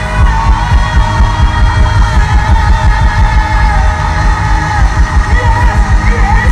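Live hard rock band playing loudly: a rapid, steady bass-drum beat under electric guitar and a male singer's voice.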